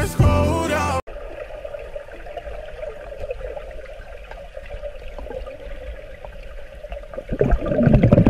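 A pop song with a man singing cuts off abruptly about a second in, giving way to the muffled, rumbling sound of a swimmer in a pool recorded underwater. Near the end a louder bubbling comes in as he blows bubbles out of his mouth.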